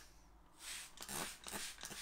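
Faint short hissing squirts from a pressurised spray bottle rinsing the slurry off a natural Japanese whetstone, three bursts about half a second apart starting about half a second in.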